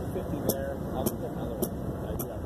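A steady low rumble with a sharp tick that repeats evenly, a little under twice a second, and faint voices in the background.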